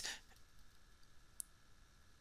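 Near silence with a single short, faint click about one and a half seconds in: a computer keyboard key pressed to step a paused video forward one frame.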